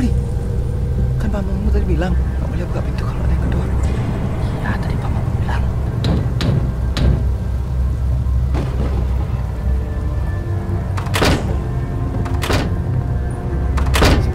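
A low, steady horror-score drone, then near the end three heavy thuds about a second and a half apart: banging on a wooden door.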